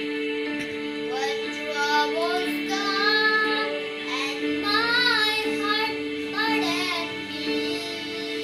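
A boy singing a solo melody over a backing of steady held chords, his voice wavering in vibrato on a long note about five seconds in.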